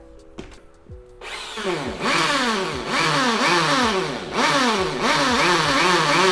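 Corded 500 W hammer drill with a 13 mm chuck, set to hammer mode and boring into a wooden board. It starts about a second in and runs loud and rattling, its motor pitch sagging and recovering over and over as the bit loads.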